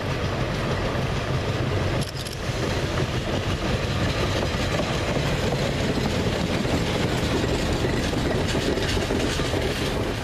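Northern Rail Pacer diesel multiple unit approaching and passing close by, its underfloor diesel engine running with a steady low note under the rolling noise of the train. The noise dips briefly about two seconds in.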